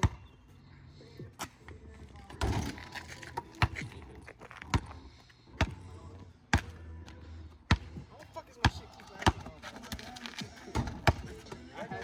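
Basketball dribbled on asphalt pavement: about a dozen sharp bounces, roughly one a second but unevenly spaced.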